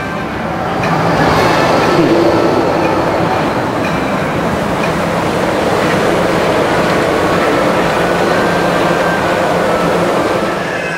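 Walt Disney World monorail train passing close overhead on its concrete beamway: a steady rolling rumble of its rubber tyres and drive, with faint steady tones in it. It grows louder about a second in and then holds level.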